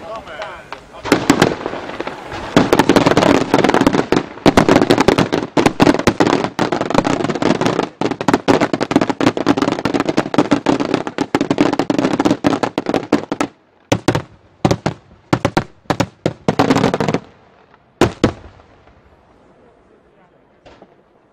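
Daytime aerial fireworks: a dense, rapid volley of sharp cracking bangs that thins out about two-thirds of the way through into scattered bangs, with a last pair of reports near the end.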